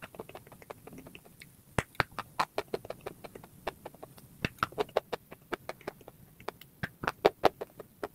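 Close-miked chewing of a hard, chalky white lump: many short, sharp crunches and mouth clicks at an irregular pace.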